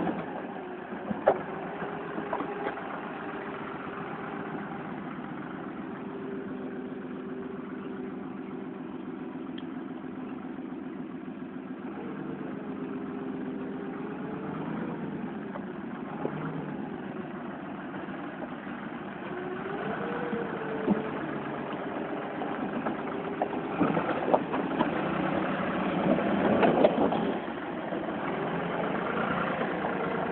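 An engine running steadily, its speed rising and falling a few times, with scattered knocks and clatters, most of them toward the end.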